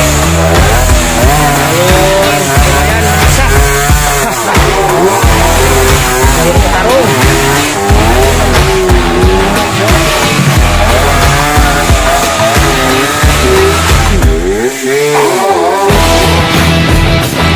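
Dirt bike engines revving unevenly, the pitch rising and falling over and over as the bikes labour up a steep, muddy slope.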